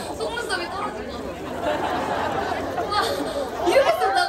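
A performer talking to the audience through a stage PA system, over the chatter of a large crowd.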